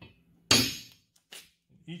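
A hammer strikes a center punch on steel box tubing once, a sharp metallic ring that dies away within about half a second, punching a small divot to start a drill hole. A much lighter tap follows about a second later.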